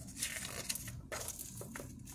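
A picture book's paper page being turned by hand: a soft, faint rustle with a few light crinkles.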